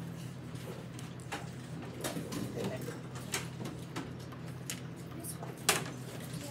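Classroom room tone: a steady low hum under scattered light clicks and knocks and faint murmuring, with one sharp click near the end as the loudest sound.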